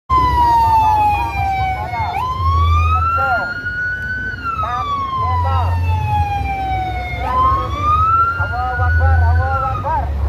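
A wailing siren tone that glides slowly down, jumps up, rises and falls again, about one sweep every five seconds. A low bass rumble swells three times beneath it.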